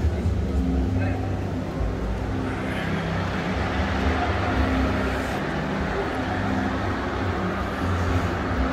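Busy indoor exhibition-hall ambience: a steady low rumble with a wavering hum, under indistinct voices of the visitors around.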